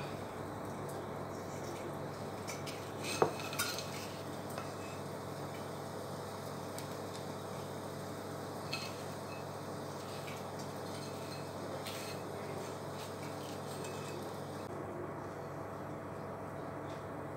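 A few light clinks and knocks of a metal spatula against a frying pan, the sharpest about three seconds in with a short ring, over a steady low hum.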